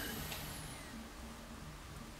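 Quiet room tone: a faint, steady hiss with a low hum underneath and no distinct event.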